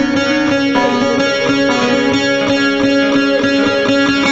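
Bağlama (long-necked Turkish saz) playing an instrumental passage between sung verses of a devotional song: evenly repeated plucked strokes, about three to four a second, over steady held notes.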